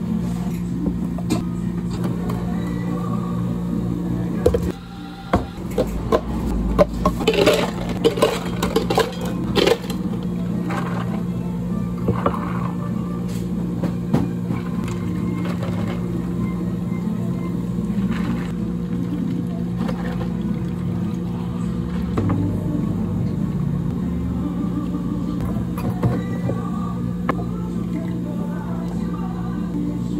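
Drink-making sounds at a cafe counter: milk poured into a plastic shaker cup, then a run of sharp clattering knocks for about five seconds as ice cubes are scooped into plastic cups. Later, iced drinks are poured, all over a steady low hum of cafe equipment.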